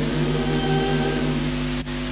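Women's a cappella choir holding a low sustained chord at the end of a phrase, the higher voices having faded out. The sound drops out for an instant near the end.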